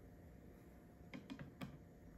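Near silence, then a few light clicks over about half a second, starting about a second in: hard plastic PSA graded-card slabs tapping against each other and the table as they are set down.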